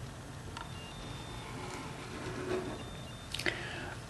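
Faint scratching of a biro drawing a line along a plastic ruler on paper, with a couple of light clicks, over a low steady room hum.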